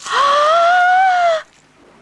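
A high, drawn-out vocal exclamation of astonishment, a long 'ooh' that rises in pitch and falls slightly, lasting about a second and a half.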